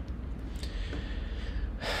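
Quiet room tone with a steady low hum, then a man's sharp intake of breath near the end.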